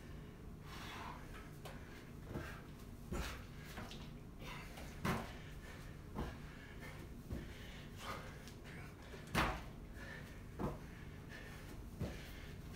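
Irregular soft thuds, roughly one a second, of hands and feet landing on rubber gym flooring during squat thrusts.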